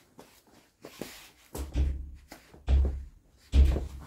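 A child car seat, held onto a car seat on a stand by the car's standard seat belt, being yanked hard by hand: a light knock, then three heavy thumps about a second apart, the last the loudest. The belt holds the child seat fast, so it shifts only together with the heavy stand.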